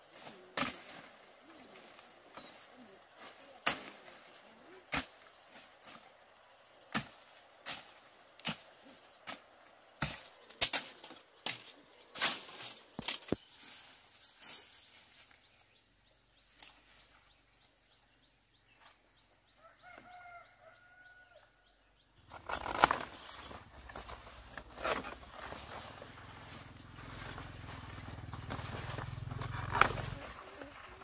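Sharp blade chops into wood or brush, irregular and about one a second, for roughly the first half. After a quiet pause, plastic mesh netting and leafy undergrowth rustle and scrape as they are handled, with a few knocks.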